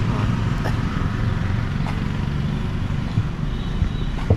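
A motorcycle passing close by on the street over a steady low rumble of road traffic.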